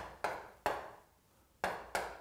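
Chalk tapping against a chalkboard as short dash marks are drawn: a handful of sharp, quick knocks, with a pause of about half a second near the middle.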